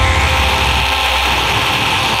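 Deathcore music: a sustained, distorted chord with a heavy low end under a held harsh vocal scream, the drums dropping out.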